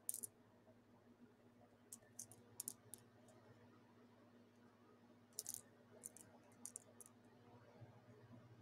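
Faint, scattered clicks and clinks of beaded stitch markers' metal clasps and beads knocking together as they are handled, in small clusters, over a faint low steady hum; otherwise near silence.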